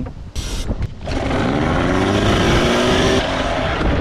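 Small gasoline outboard motor starting after a short burst of noise about half a second in, then running with its pitch rising gently for about two seconds. The motor had been refusing to start.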